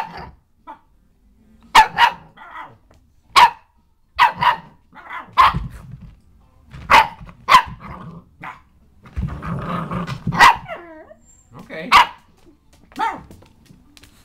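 A puppy barking in play, short sharp barks at irregular intervals, about nine in all, with a longer low growl a little past the middle.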